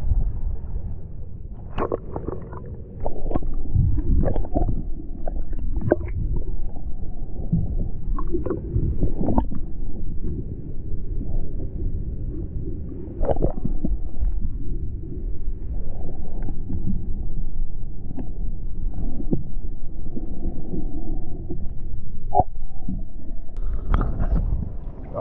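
Muffled low rumble of water on a submerged camera's microphone, with scattered knocks and clicks.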